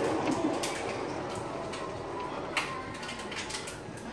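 Heavy rain falling outside a window, with many sharp ticks of raindrops striking close by.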